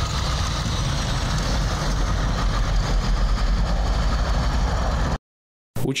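Heavy vehicle engine running steadily, strongest in the low end, with a dense hiss of noise over it; the sound cuts off abruptly about five seconds in.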